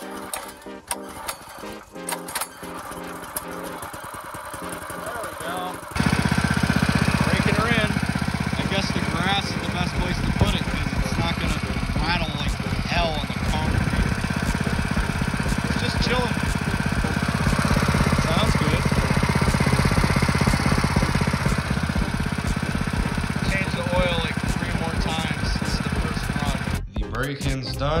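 Background music at first; about six seconds in, a new Predator 212 single-cylinder four-stroke small engine comes in running steadily in stock form on its break-in run, with the music continuing over it.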